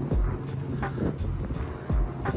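Single-engine piston light airplane running at low power as it taxis, a steady low drone. Background music with a steady beat runs under it.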